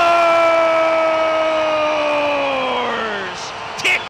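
Arena goal horn sounding one long, steady note over a cheering crowd, signalling a goal. About three seconds in its pitch sags as it winds down.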